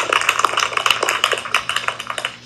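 A classroom of children applauding, many quick overlapping hand claps, heard played back through a laptop's speaker.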